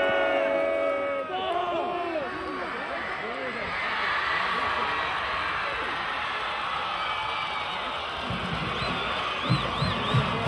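Football crowd yelling and cheering through a long touchdown pass. The noise swells as the ball is caught and carried in. It opens with a held chord in the first second, and a run of low thumps comes near the end.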